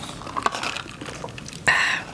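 Bubble tea sipped through a plastic straw: faint sucking with small clicks, then a brief louder sound near the end.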